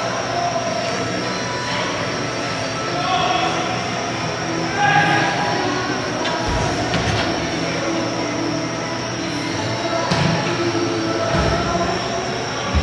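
Echoing ambience of an indoor soccer game in a large metal hall. A steady hum runs under brief squeaks of shoes on the court and distant calls from players, and a few dull thuds of the ball being kicked come in the second half.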